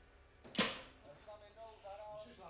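A single sharp hit about half a second in, dying away quickly, followed by faint low talking.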